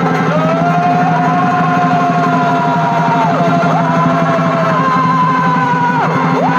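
Live Chhau dance music: a shehnai holding long notes with quick slides down and back up between them, over fast, steady drumming.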